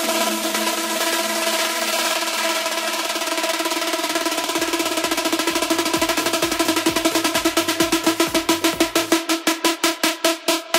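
Electronic dance music in a DJ mix at a build-up. The bass is filtered out, and a rapid drum roll comes through more and more sharply toward the end.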